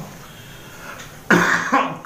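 A man coughs once, a sudden loud burst a little past halfway, after a pause in his speech.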